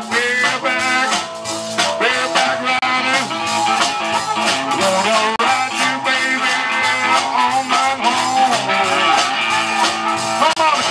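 Live blues band playing an instrumental passage: amplified blues harmonica with bending notes over electric guitar, bass, keyboard and a steady drum beat.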